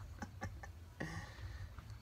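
A few faint clicks and light knocks of a wooden walking stick and its handle piece being handled, over a low steady hum, with a short breathy sound about halfway through.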